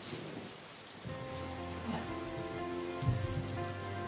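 Soft background music enters about a second in: sustained chords over a low bass note, with an even hiss like light rain or fabric rustle underneath.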